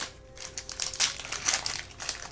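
Foil wrapper of a Yu-Gi-Oh booster pack crinkling in the hands as it is opened, in a few short rustles.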